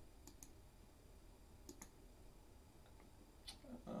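Faint clicks of a computer mouse over near silence, mostly in quick pairs: two about a third of a second in, two more about a second and a half later, and one more near the end.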